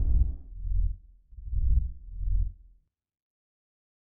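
Four deep bass thuds of an animated logo sting, about two and a half seconds in all, with nothing in the upper range.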